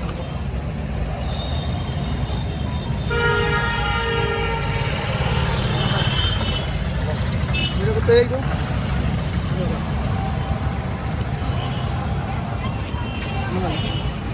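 Busy street traffic with a steady low rumble. A vehicle horn honks for about two seconds, starting about three seconds in, and other shorter horn toots come and go. A brief louder blip sounds about eight seconds in.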